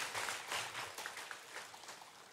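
Congregation applauding in a large hall, the clapping thinning and fading out toward the end.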